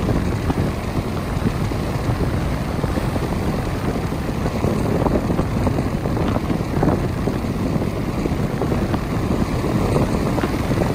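Strong wind buffeting the microphone in a steady low rumble, with surf breaking on the beach behind it.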